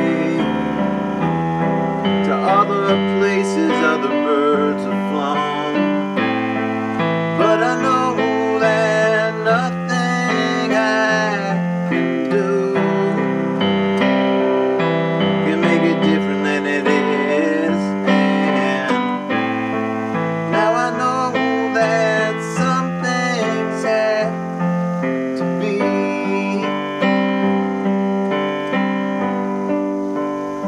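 Instrumental break in a song: piano playing chords with a melody line over them, with no singing.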